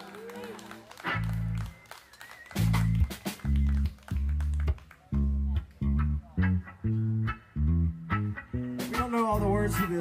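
Electric bass through an amp playing short, separate low notes with gaps between them, with a few electric guitar notes over it. A voice comes in near the end.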